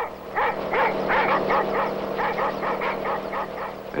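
A small dog yapping in quick, repeated yips, about four a second, over a steady low hum.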